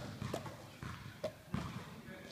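A handful of irregular, faint knocks and slaps of heavy medicine balls being caught and thrown by players doing sit-ups.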